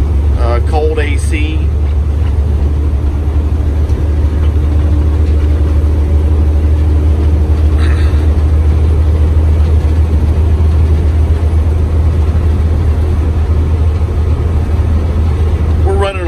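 Cab interior of a Volvo VNL truck on the road, its Volvo D13 inline-six diesel running steadily under way with a deep drone and road noise.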